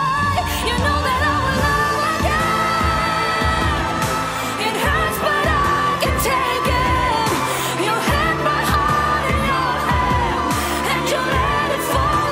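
Female pop singer singing long, held notes over a live band backing. Drums and bass come in right at the start, with a steady beat.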